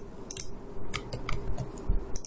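A few scattered soft clicks from a computer mouse and keyboard over a faint steady hum.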